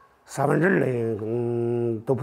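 A man's voice drawing out a single syllable at a steady pitch for about a second and a half, starting about a third of a second in, in Chinese speech.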